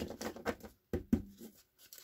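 A deck of tarot cards being shuffled by hand: a few quick bursts of cards slapping and sliding against each other, dying away after about a second and a half.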